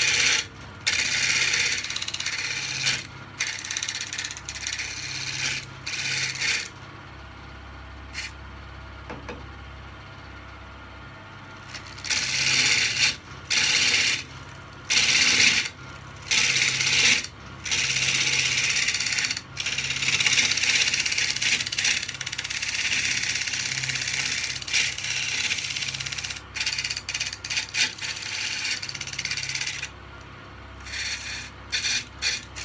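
Wood lathe running with a steady low hum while a gouge roughs out a large spinning oak blank, cutting in repeated passes: each cut a loud shaving noise that stops short when the tool comes off the wood. There is a longer pause in the cutting about a third of the way through, with only the lathe running.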